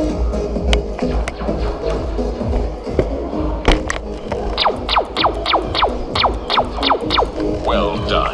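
A laser tag gun firing a rapid string of about ten falling electronic zaps, roughly three a second, starting about halfway through. They play over loud arena music with a steady deep bass.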